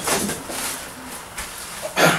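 Cardboard boxes being handled: rustling and scraping as small light-bulb boxes are lifted out of a shipping carton, with a few soft knocks.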